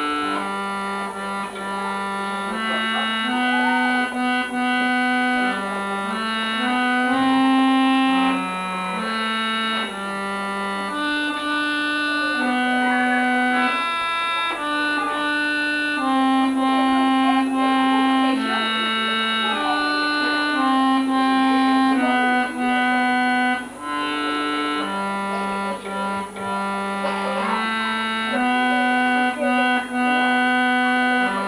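An electronic keyboard plays a slow single-line melody of held notes, each one steady in pitch and changing every second or so.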